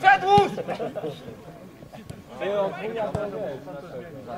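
Men shouting calls during a football match: a loud, close shout right at the start and another burst of calling about two and a half seconds in, each with a short dull thud under it.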